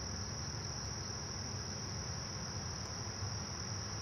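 Crickets trilling in a steady, unbroken high-pitched chorus, with a faint low rumble underneath.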